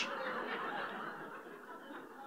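Audience laughter in a large room, fading away.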